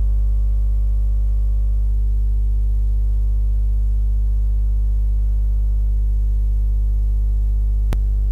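Loud steady electrical hum, a low tone with a ladder of even overtones, unchanging throughout. A single short click sounds just before the end.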